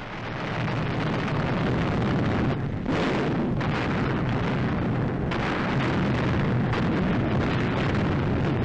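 Air-raid sound effects on an archival wartime newsreel soundtrack: a dense, steady roar of explosions and bomber engines, with no single blast standing out.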